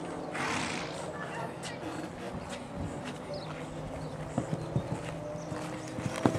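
Horse's hoofbeats cantering on a sand arena, with a few sharper thuds near the end as it reaches the fence.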